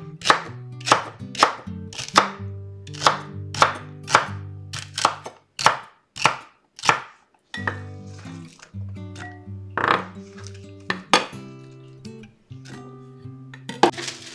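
Chef's knife chopping celery on a wooden cutting board: sharp, evenly spaced cuts about twice a second for the first half, then a few scattered cuts.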